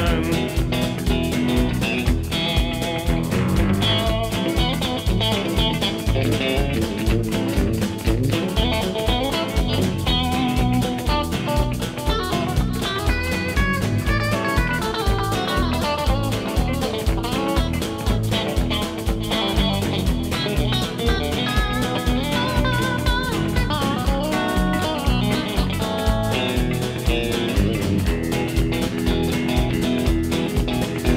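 Instrumental break with an electric guitar playing a lead line over a steady band beat with drums.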